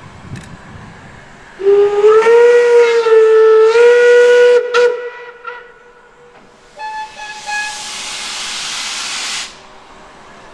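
Steam locomotive whistle of the German class 01 express engine 01 066 blowing one long blast of about three seconds, its pitch rising slightly as it opens. A few seconds later there is a loud hiss of escaping steam lasting nearly three seconds.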